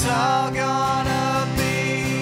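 Acoustic guitar strummed in a steady rhythm under a woman's singing, a live Americana folk song.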